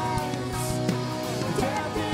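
Live worship band playing: acoustic and electric guitars with keyboard, over a steady beat.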